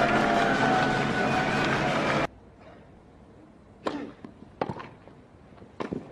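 Busy crowd chatter and voices in a tennis arena that cut off abruptly about two seconds in, followed by a quiet court where a tennis ball is struck sharply three times during a rally.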